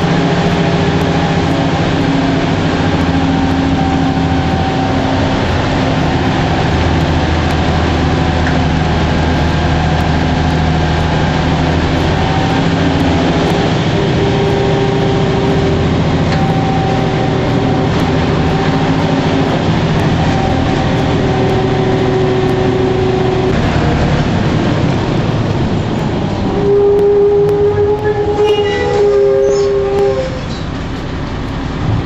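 Inside a moving city bus: steady engine and road rumble, with whining drivetrain tones that rise and fall in pitch as it runs. Near the end the rumble eases and a louder whine climbs in pitch.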